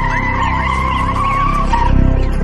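Tyre-screech sound effect in a Brazilian funk track: a long, high squeal that stops near the end, over the song's bass beat.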